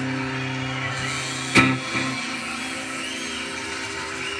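Firefly acoustic guitar's last chord ringing out and fading. A single sharp knock comes about a second and a half in, and the ringing is cut off shortly after.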